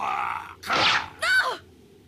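Anime fight-scene voice acting: a man's shout that ends about half a second in, then two short cries, the last one falling in pitch.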